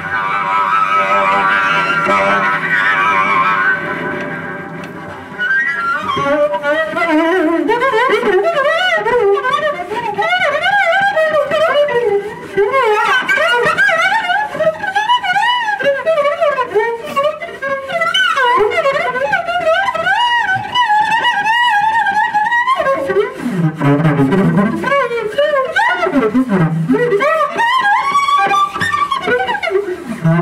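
Solo cello played with the bow in a free improvisation. A dense sustained chord fades out over the first few seconds. From about six seconds in, high notes slide up and down with wide vibrato.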